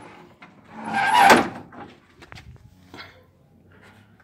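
Rear engine lid of a Volkswagen Kombi being unlatched and opened: a brief scraping noise that builds and stops about a second in, then a few faint clicks and knocks.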